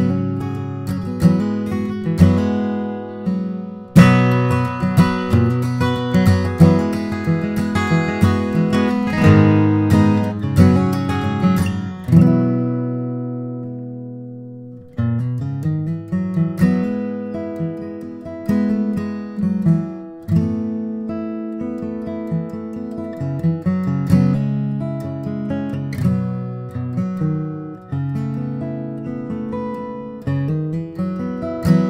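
John Arnold-built D-18-style dreadnought acoustic guitar, mahogany back and sides under a spruce top, played solo with picked single notes and strummed chords. About twelve seconds in, a chord is left to ring and fade for roughly three seconds before the playing starts again.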